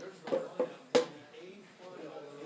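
Voices in a small room, broken by two short loud voice sounds and then a single sharp knock about a second in, the loudest sound.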